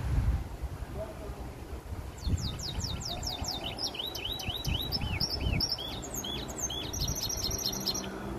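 Brimstone mule, a hybrid of the brimstone canary and the domestic canary, singing from about two seconds in: a string of quick falling whistled notes, then arched notes and a fast high trill near the end, over a low background rumble.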